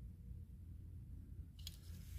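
Near silence: a steady low room hum, with a few faint clicks near the end.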